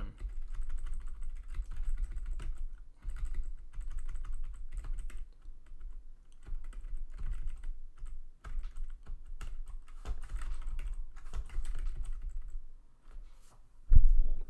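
Typing on a split computer keyboard: quick, irregular key clicks in runs, with a short break near the end.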